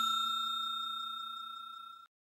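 Decaying ring of a bell or chime sound effect, the notification-bell 'ding' of a subscribe animation, holding one steady pitch as it fades away and stops.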